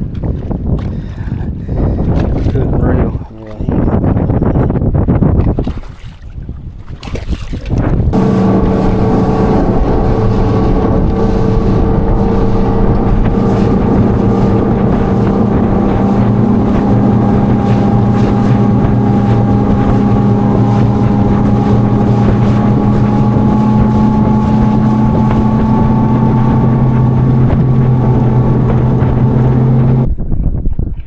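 Bass boat's outboard motor running at speed across open water. It comes in about eight seconds in as a steady hum that climbs slightly in pitch, heard over wind buffeting the microphone and water rushing along the hull. Before that there is only wind and water noise.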